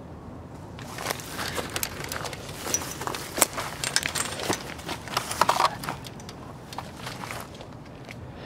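Footsteps crunching and rustling through dry leaves and brush, with the camera being jostled, starting about a second in and tapering off near the end.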